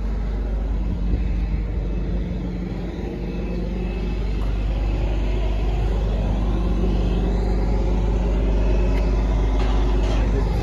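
A vehicle engine idling steadily, heard as a constant low rumble with a steady hum.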